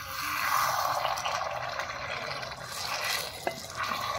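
Thick cauliflower gravy being stirred with a metal ladle in an iron kadai: a wet, sloshing scrape throughout, with a couple of sharp ladle taps against the pan near the end.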